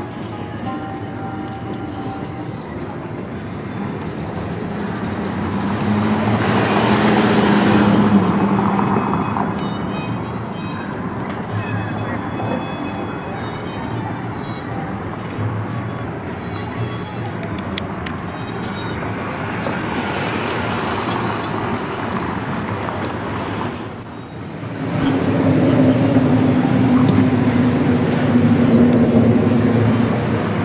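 City street traffic: motor vehicles passing, loudest about a quarter of the way in and again over the last few seconds.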